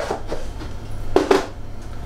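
Quiet kitchen handling with a steady low hum underneath, and one short knock of a small bowl being handled about a second in.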